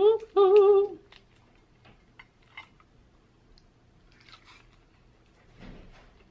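A woman hums a short, wavering "mmm" of enjoyment, about a second long, at the start. Faint crunching and wet clicks of eating fried chicken wings dipped in sauce follow.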